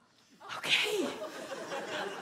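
A sudden sharp, breathy burst of a person's voice about half a second in, a stifled laugh or gasp of shock. It is followed by a short spoken 'OK' over a low hubbub from the room.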